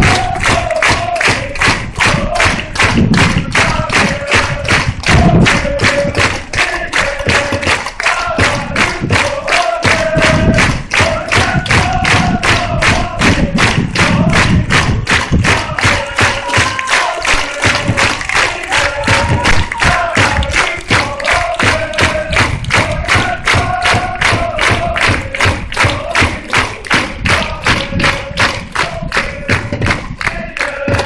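A crowd of football supporters singing a chant in unison over a steady beat of about three strokes a second.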